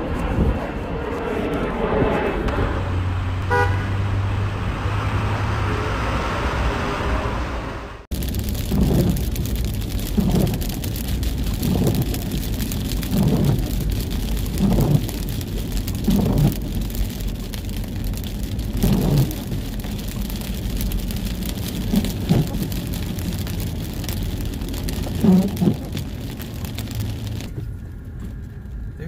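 Car driving in heavy rain: steady rain and wet-road noise inside the cabin, with windshield wipers sweeping about every one and a half seconds. It follows about eight seconds of a different intro sound that cuts off suddenly.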